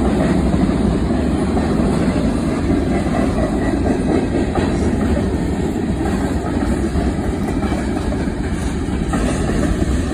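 Freight cars of a CSX manifest train rolling past, steel wheels on the rails making a steady rumble.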